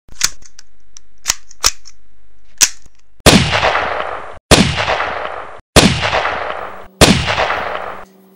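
Gunshot sound effect: a few sharp clicks, then four loud gunshots about 1.2 seconds apart, each with a long echoing tail cut off abruptly before the next.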